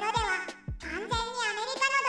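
A high-pitched voice narrating in Japanese over light background music with held notes and a low beat.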